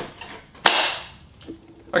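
A single sharp plastic click about two thirds of a second in as the Miele Blizzard CX1's bagless dust container is pressed home and latches into the vacuum body, followed by a faint softer knock.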